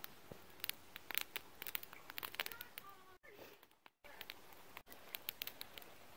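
Campfire crackling faintly: scattered sharp pops and snaps over a low hiss.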